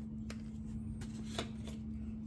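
Small clicks and handling rustle as the plastic cap is twisted off a spice jar: a few light clicks, the loudest about one and a half seconds in. A steady low hum runs underneath.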